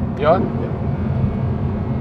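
Audi R8 V10 Plus's mid-mounted V10 and road noise droning steadily inside the cabin while cruising, with no revving.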